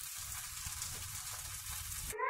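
Milk tea (masala chai) simmering in a steel pan on the stove: a steady fizzing hiss from the frothing tea with a low rumble underneath.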